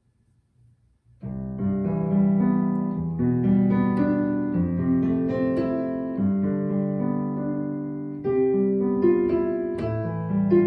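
Digital piano played with both hands, starting about a second in: sustained, overlapping notes with a bass line under a melody. A new phrase comes in louder near the end.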